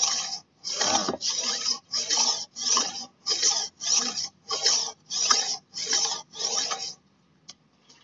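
A golok (machete) blade is drawn back and forth across the coarse side of a Cap Panda whetstone, at about two strokes a second. The strokes stop about seven seconds in. The coarse grit is grinding the blade's bevel flat and even.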